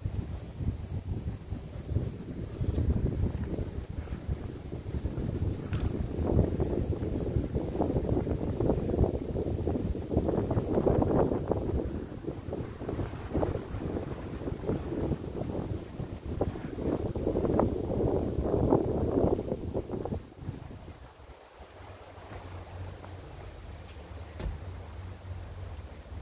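Strong sea wind buffeting the microphone in rising and falling gusts, easing off sharply near the end.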